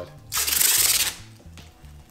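Masking tape being pulled off the roll in one quick strip, a short rip lasting under a second, starting a moment into the clip.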